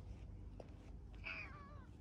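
A domestic cat meows once, a short call just past the middle whose pitch wavers as it trails off.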